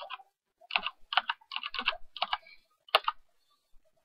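Typing on a computer keyboard: a quick run of about ten keystrokes, spelling out a file name, that stops about three seconds in.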